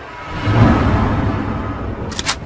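Cinematic intro sound effect: a deep rumbling whoosh that swells up about half a second in and then slowly fades away.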